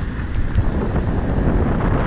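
Wind buffeting the camera microphone in a steady low rumble, with road traffic passing through the intersection behind it.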